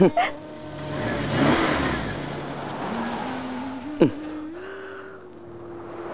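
A car on the move: a rushing noise swells and fades over the first few seconds above a steady hum, with a brief sharp sound about four seconds in.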